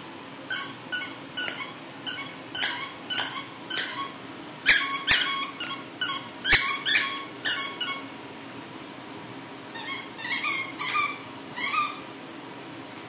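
Squeaky dog toy squeaking again and again as a puppy chews it, about two to three squeaks a second, with a pause near the end before a few more. A few sharp taps come during the loudest squeaks in the middle.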